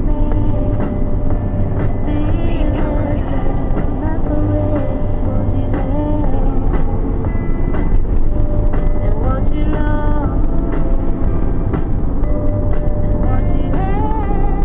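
Music with singing playing on the van's radio inside the cab, over the steady low rumble of a Ford Transit van's engine and tyres at motorway speed.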